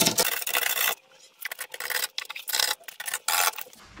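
A hand scraper scraping thick underseal off a classic Mini's rusty steel outer sill. One long scrape is followed by about four short, separate strokes.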